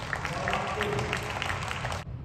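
Scattered clapping from the arena crowd after a table tennis point ends, with a voice calling out near the middle.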